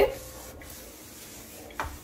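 Sponge rubbing on a stainless-steel sink and chrome tap, faint, with a short knock near the end.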